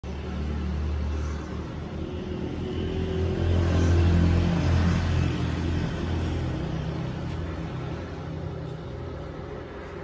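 A low, steady machine drone from a fibre-opening machine's motor in a pillow-stuffing workshop. It swells louder near the middle and then settles.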